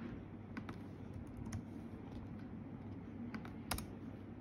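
Computer keyboard being typed on: irregular scattered key clicks, with a louder pair of clicks near the end.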